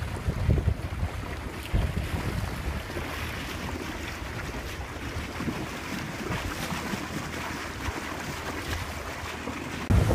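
Wind buffeting the microphone and water rushing past the hull of a moving boat, gusty in the first couple of seconds, then a steadier hiss; it turns louder right at the end.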